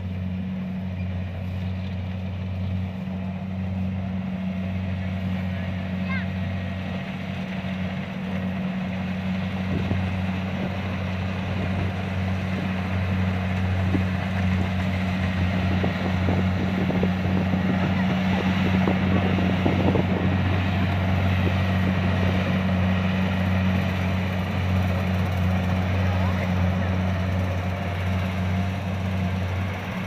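Kubota DC-70 rice combine harvester's diesel engine running steadily with a deep hum while cutting and threshing rice, growing louder as the machine draws nearer.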